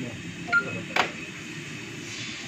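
Samsung front-load washing machine's touchscreen control panel beeping as the child-lock Activate button is held: a short electronic beep about half a second in, then a sharper, click-like beep about a second in as the lock engages.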